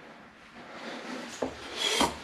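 Rubbing and rustling of things being handled on a workbench, growing louder towards the end, with a small knock a little past halfway.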